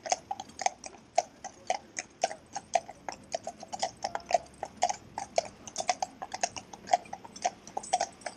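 Shod hooves of a pair of Friesian horses walking on tarmac: a steady, uneven clip-clop of several hoof strikes a second, the two horses' footfalls overlapping.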